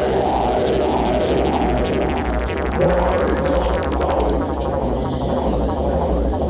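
Electronic synthesizer film score, with a pulsing low bass under swelling mid-range synth notes.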